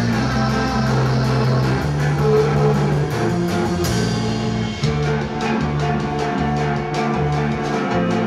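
A rock band playing live on electric guitars, bass guitar and drum kit, with steady cymbal strokes and a cymbal crash about four seconds in.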